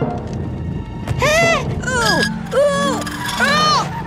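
Four short, high-pitched squeaky cartoon vocal calls, each rising and then falling in pitch, over background music.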